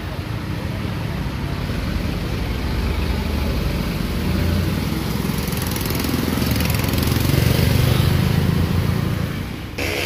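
Diesel engines of microbuses running close by, a steady low rumble that swells to its loudest near the end and then cuts off suddenly.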